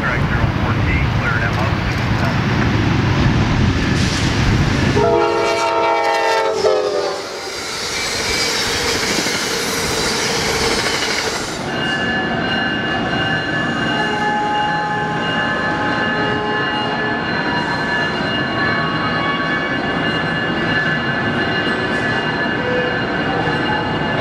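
Amtrak passenger train approaching with a heavy rumble, then sounding its multi-note horn for about two seconds, the chord sagging in pitch as it passes, followed by the loud rush of the passing cars. From about twelve seconds a second Amtrak train (#140) rolls past along a station platform: a steady rumble with thin, steady high whining tones over it.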